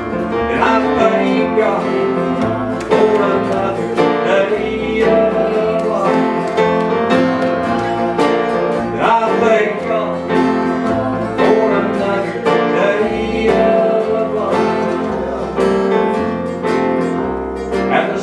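Live southern gospel music: acoustic guitars strumming with a man singing lead over them, and bass notes moving underneath.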